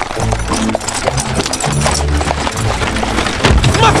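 Horse hooves clip-clopping as a horse-drawn carriage comes on at speed, over background music, with a heavy thump near the end.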